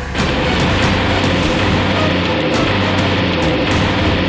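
A small car driving off, its engine and tyre noise steady and loud for nearly four seconds, mixed with the background music score. The noise cuts in sharply just after the start.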